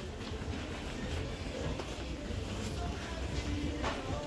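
Shop-floor background noise: a steady low rumble with faint distant voices, and a single click near the end.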